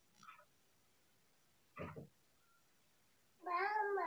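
Quiet room tone broken by two faint short sounds, then about three and a half seconds in a loud, drawn-out high-pitched vocal call with a smoothly gliding pitch.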